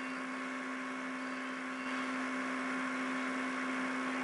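Steady electrical hum, one constant tone with fainter higher tones, over an even hiss.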